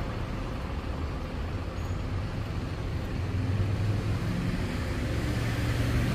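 Street traffic: cars driving past, with a low engine hum that grows louder over the last few seconds as a car approaches.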